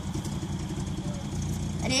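Small four-cylinder engine of a Geo Tracker idling steadily, not yet under load.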